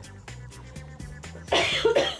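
Background music playing, with a person coughing loudly near the end.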